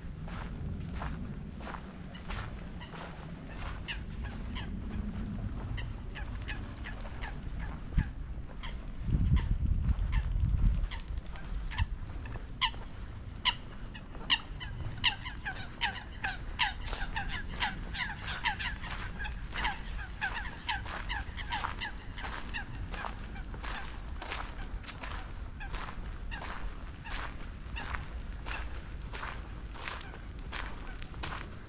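Steady footsteps of a person walking, about two steps a second, with a bird calling in a fast run of short repeated notes that is strongest in the middle and dies away after about twenty seconds. A brief low rumble comes about nine seconds in.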